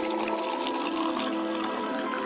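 Phonk music in a filtered break: a steady hiss of noise over a few held tones, with the bass cut out.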